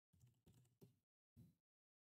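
Very faint computer keyboard typing: four short bursts of keystrokes in the first second and a half, then silence.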